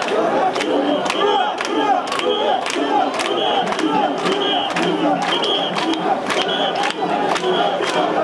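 A crowd of mikoshi bearers shouting a rhythmic chant in unison as they carry a portable shrine. Short high whistle blasts about once a second and sharp claps about twice a second keep the beat.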